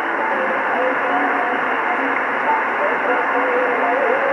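Shortwave broadcast on an Icom IC-R8500 communications receiver, tuned in upper-sideband mode: a faint voice speaking through steady hiss and band noise, the audio thin and muffled with no treble.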